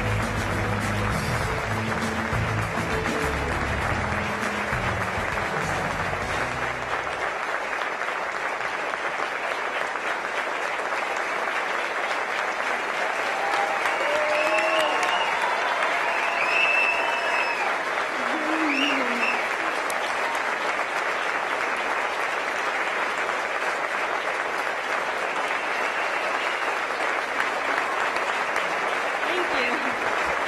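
An audience applauding steadily, with music playing under it until it stops about seven seconds in. Around the middle a few voices cheer and call out over the clapping.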